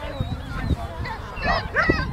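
A dog barking in short, high yips, several in quick succession, the loudest two close together in the second half.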